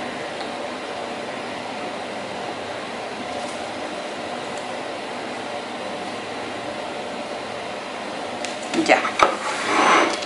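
Steady, even background noise in a small room, like an air conditioner or fan, with no distinct handling sounds; a short spoken word comes near the end.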